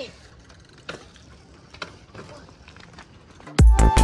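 Faint rolling noise with a few scattered clicks from a mountain bike on a dirt track. About three and a half seconds in, loud electronic music with a heavy beat cuts in suddenly and drowns it out.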